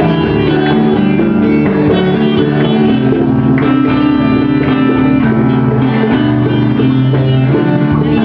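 Live acoustic folk band playing an instrumental passage: strummed acoustic guitars with congas, steady and continuous.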